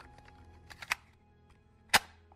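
Background music fades out at the start, followed by a few faint taps about a second in and a single sharp click near the end.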